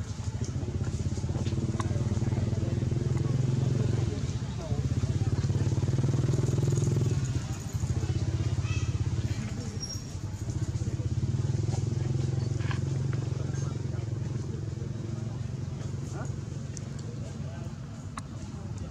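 Motorbike engines running nearby, a low steady pulsing note that swells and fades three times as they pass.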